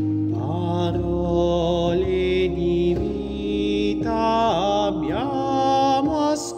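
A man singing an Italian hymn melody over sustained chords on a church organ, with the organ's steady held notes under his gliding, vibrato-laden voice.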